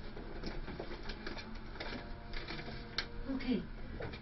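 Scattered light clicks and rustles of paper being handled, with a faint voice in the background.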